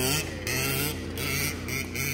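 Small engine of a large-scale RC Baja truck running through mud, its pitch rising and falling as the throttle is worked.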